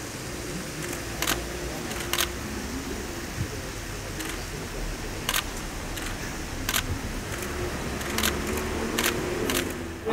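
Camera shutters clicking sharply about ten times at uneven intervals over a steady low background of outdoor ambience.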